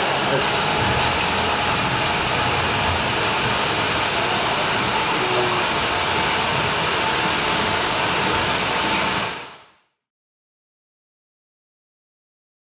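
Steady rushing noise with a faint thin tone running through it, fading out to silence about nine and a half seconds in.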